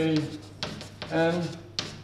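Chalk scratching and tapping on a blackboard as a formula is written, in short strokes. A man's voice murmurs briefly twice among the strokes.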